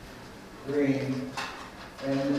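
A man's voice speaking briefly, followed by a short sharp click about one and a half seconds in.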